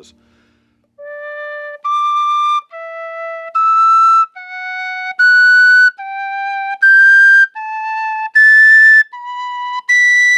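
A chrome-plated brass tin whistle in D, played as an octave-jumping exercise: each note of the scale going up from low D to B is sounded in the low octave, then jumped to the octave above. The upper notes come out much louder, and the player finds the top octave needs a bit more air.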